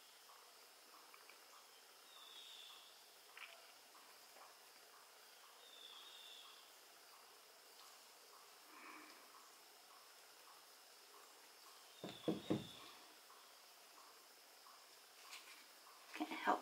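Near silence: faint room tone with a thin steady high whine and a few faint high chirps, broken by one brief soft sound about twelve seconds in.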